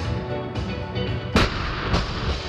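Loaded barbell with bumper plates dropped from the shoulders onto a rubber gym floor: one heavy thud a little over a second in, over background guitar music.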